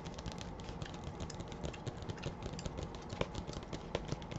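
Quick, irregular fingertip and fingernail tapping and clicking on a paperback book's cover, over a steady low hum.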